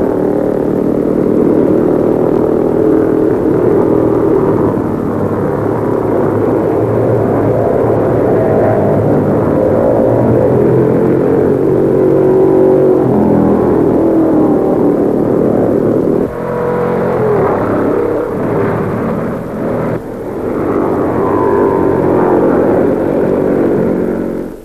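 A field of 500cc Formula 3 racing cars, Coopers among them, racing past together, their single-cylinder engines running hard at high revs. The pitch rises and falls as cars come and go, and the sound dips briefly twice in the second half.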